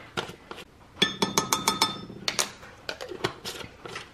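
A spoon tapping against a glass measuring cup while minced garlic is knocked off it: a quick run of about eight ringing clinks about a second in, then a few softer taps.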